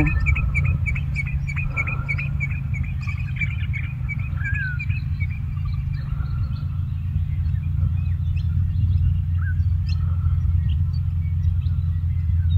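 Birds chirping outdoors: a quick run of short, high chirps through the first few seconds, then scattered single whistled notes. A steady low rumble lies under it all.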